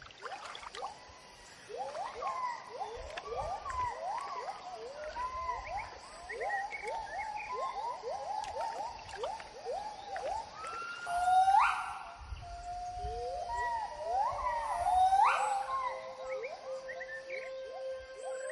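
Gibbon song: a fast series of short rising hoots, with two louder, longer rising whoops about two-thirds of the way through. A soft steady tone of background music comes in near the end.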